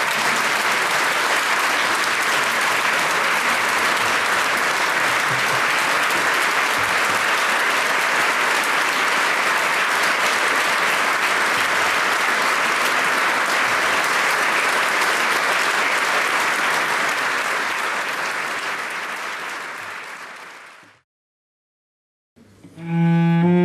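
Theatre audience applauding steadily. The applause fades near the end and then cuts to silence.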